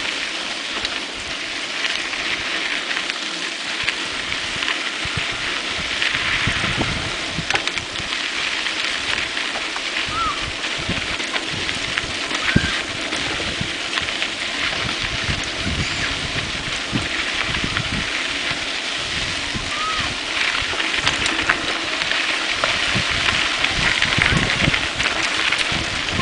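Riding a mountain bike along a dirt and gravel road: a steady rush of wind and tyre noise, with frequent low bumps and knocks as the bike jolts over the rough surface.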